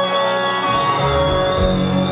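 Live rock band playing an instrumental passage: sustained chords with electric guitar, and electric bass notes coming in about halfway through.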